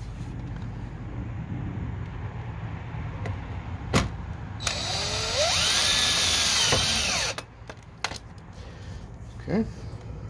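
DeWalt 20V Max cordless drill driving a screw through the side hole of a spring-loaded door stopper into a door. The motor runs for about two and a half seconds near the middle, its whine rising and then falling off as the screw seats. A sharp click comes just before it.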